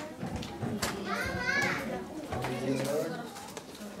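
Children's voices chattering and calling out in a hall, with one high child's voice rising and falling about a second in. A low steady hum begins a little past halfway.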